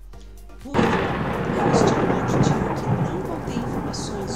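A loud, dense wash of noise starts about three-quarters of a second in and buries a woman's speech so that it can barely be made out: noise laid over the speech on purpose to show how it masks what is said.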